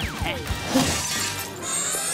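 Cartoon sound effects over background music: a quick falling whistle in the first half second, then a sudden crash-like burst about a second in, followed by a high glittering shimmer near the end.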